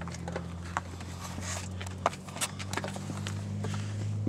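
Irregular footsteps and light taps on a paved road, over a steady low hum.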